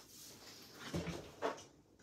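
Faint rummaging and handling sounds while someone searches through craft supplies for ribbon, with two short louder handling noises about a second and a second and a half in.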